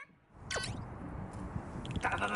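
A short editing sound effect: one quick glide falling steeply in pitch, about half a second in, over the transition to a new round of a variety show. Near the end a man's voice starts.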